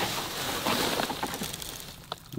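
Dry straw and grass rustling and crackling as a corrugated cover sheet is lifted off the ground: a dense run of small crackles that thins out toward the end.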